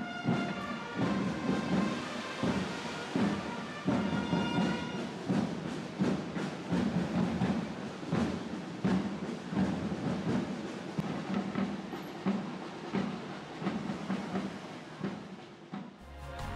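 Parade drums playing a steady beat, about two hits a second, with a few held brass-like notes near the start and around four seconds in.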